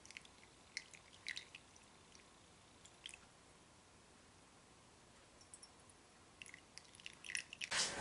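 Faint, scattered drips and small ticks as the dark copper sulfate solution is poured through a coffee filter in a funnel into a glass Erlenmeyer flask. The drips come in a few spread-out ticks, then a denser run near the end.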